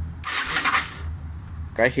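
Yamaha TW200's electric starter briefly cranking the single-cylinder engine for about a second, a pulsing whirr that stops short. The engine turns over with compression but does not fire, since no carburettor is fitted.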